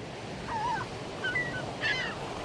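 Several short, pitch-bending animal calls over a steady rushing noise.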